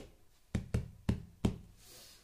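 A hand knocking on a deck of cards: five sharp, quick knocks at uneven spacing within the first second and a half.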